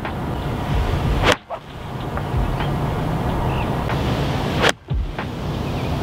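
Steady outdoor wind rumble on the microphone, broken twice by a sharp click followed by a brief dropout: once about a second in and again near the fifth second.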